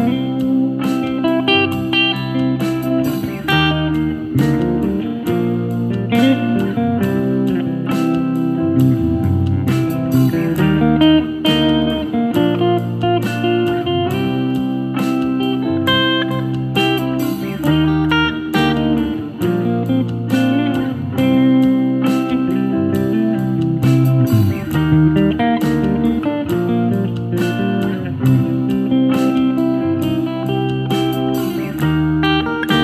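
Semi-hollow electric guitar playing an improvised lead solo: fast arpeggio lines that move up and down through a B-flat to C chord change. It plays over a backing track with sustained chords and a steady beat.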